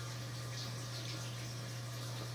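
Steady trickle of running water over a constant low hum: a Tower Garden's pump circulating water down through the vertical growing tower.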